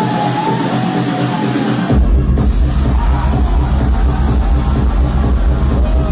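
Loud trance dance music from a DJ set, with the deep bass filtered out at first; about two seconds in the kick and bass drop back in and the track runs on at full power.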